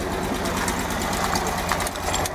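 1975 LuAZ off-roader's air-cooled V4 engine idling steadily in neutral, with a fast, even clatter.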